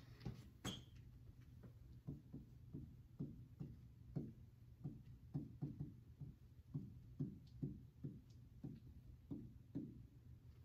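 Faint, irregular ticks and taps of a stylus on the glass of an interactive touchscreen whiteboard as words are written, about two to three a second, with one sharper click under a second in.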